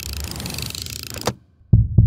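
Logo sting sound effect: a bright, hissing whoosh that cuts off about a second in, followed by two short, deep hits near the end.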